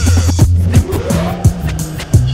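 Instrumental hip hop beat between rap lines: a deep, steady bass line and drum hits, with a squealing glide rising and falling through the middle, typical of a turntable scratch.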